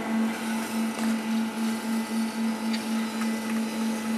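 Zymark RapidTrace SPE workstation modules running their rack scan: a steady motor hum that pulses evenly, about three to four times a second.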